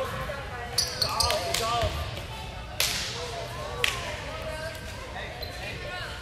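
Volleyballs being struck and bouncing on a hardwood gym floor: a few sharp smacks about a second in, near three seconds and near four seconds, echoing in the large hall, over faint chatter.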